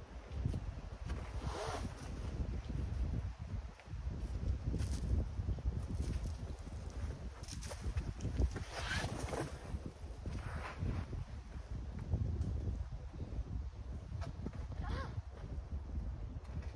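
Wind buffeting the microphone, a steady low rumble, with a few brief hissing bursts scattered through it.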